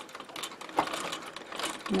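Antique Singer 15K treadle sewing machine stitching slowly while darning a sock, a light irregular clicking from the needle mechanism, with one sharper click just under a second in.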